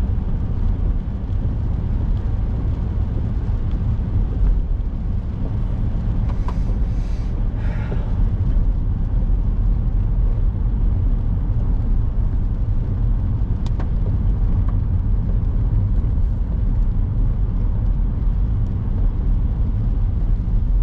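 Steady low rumble of a car's engine and tyres on a wet road, heard from inside the cabin while driving. A brief hiss about seven seconds in and a single click past the middle.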